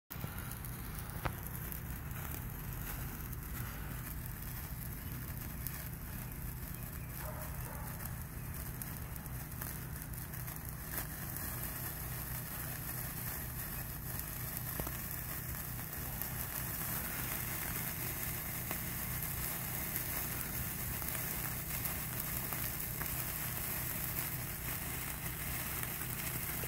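Wire sparklers burning with a faint fizzing crackle and scattered ticks, the hiss growing a little stronger in the second half as more of them catch. A steady low hum runs underneath.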